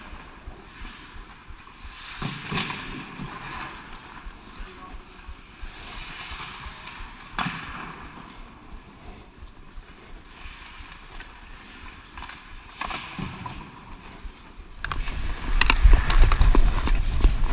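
Ice rink ambience picked up by a skating player's camera: skate blades scraping on the ice, with a few sharp clacks of sticks or the puck and faint distant shouts. Near the end a loud low rumble takes over as the wearer skates hard and the camera is buffeted.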